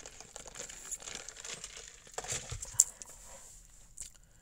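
Faint rustling and scattered small clicks, with one sharper click a little before the end.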